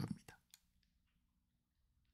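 A few faint clicks of a computer mouse scrolling a web page, in the first second, then near silence.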